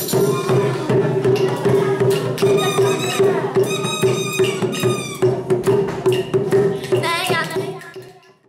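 Background music with a steady beat, fading out near the end.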